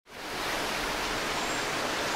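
A steady, even hiss that fades in quickly from silence at the start and then holds level.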